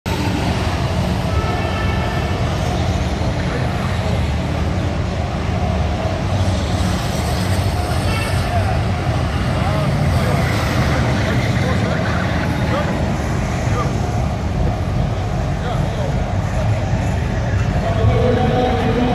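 Lowrider cars running on an indoor arena floor, a steady low engine din mixed with crowd chatter that echoes in a large hall.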